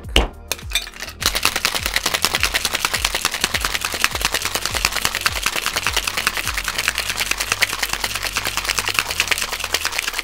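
Ice rattling inside a two-piece metal cocktail shaker, shaken hard in a rapid, steady rhythm that starts about a second in. The ice is chilling and diluting a cognac and advocaat cocktail and blending the two.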